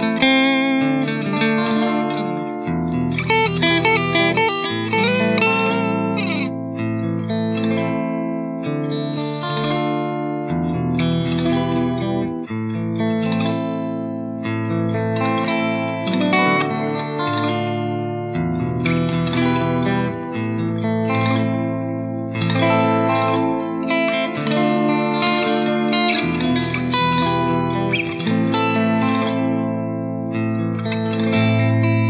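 Clean electric guitar from a Fender Stratocaster through the green clean channel of an EVH 5150 III 50-watt 6L6 valve amp and a 2x12 cabinet with Vintage 30 speakers, with reverb on. Several looped guitar parts play together, and a chord progression with a low bass part repeats about every eight seconds.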